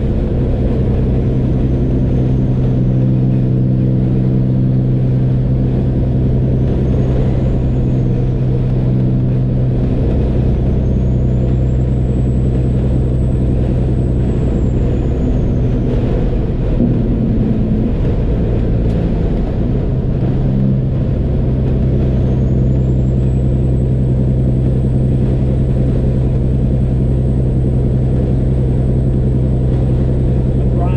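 Kenworth W900 semi truck's diesel engine running steadily at highway cruising speed, a constant low drone with road noise, heard from inside the cab.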